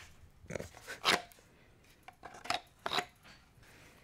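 A handful of sharp plastic clicks and knocks as a Glock 17 with an X300 weapon light is pushed into a knockoff Safariland 6354DO-style polymer holster. The holster's optic hood bumps against the pistol's red-dot sight, closer than it should be.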